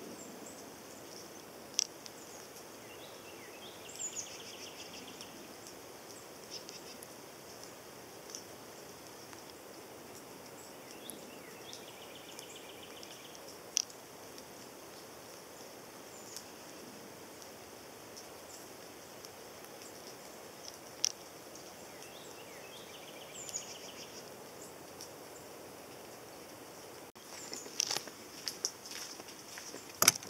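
Faint birdsong in the open air over a steady hiss: the same short trilled phrase repeats three times, about ten seconds apart, among scattered chirps and single sharp clicks. In the last few seconds comes a louder burst of clicking and rattling, fitting a hand working a travel trailer's entry door latch.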